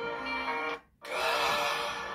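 Slow background music of held, steady chords that cuts out suddenly for an instant just before the middle, then resumes.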